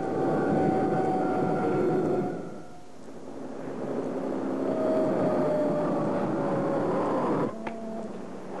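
Cartoon jet-flight sound effect: a rushing, engine-like roar with a thin whistle that slowly falls in pitch, swelling twice and stopping suddenly near the end.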